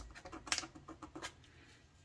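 Small piece of sandpaper rubbed on the metal frog tab of a model railroad turnout to clean off the paint: a run of short, light scratching strokes that stop a little after halfway.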